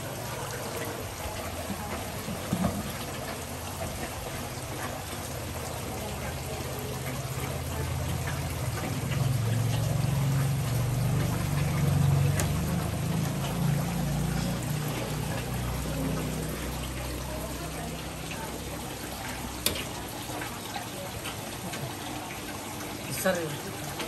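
Water trickling and sloshing in a shallow crayfish pond as someone wades barefoot through it. A low rumble swells louder in the middle.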